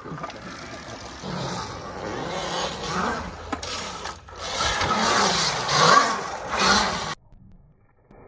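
Dirt bike engine revving up and down over and over as it is ridden around a concrete bowl, with tyre noise on the concrete. The sound cuts off abruptly near the end.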